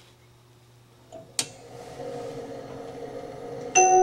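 A 17-inch Stella disc music box being set going: a sharp click about a second and a half in, then a steady running sound from the mechanism that builds. Near the end the steel comb starts ringing out the first notes of the tune loudly.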